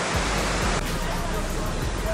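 Steady rushing of the cascading waterfall into a 9/11 Memorial reflecting pool, which drops away abruptly under a second in, leaving a softer outdoor noise.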